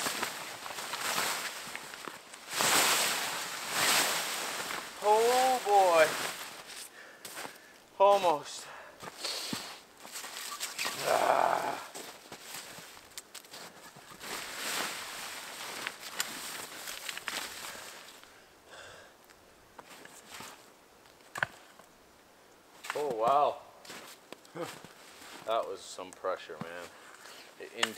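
Nylon tent fabric rustling and scraping as a snow-covered tent is pulled down and bundled up, in bursts that are busiest in the first half. A few short wordless vocal sounds come in between.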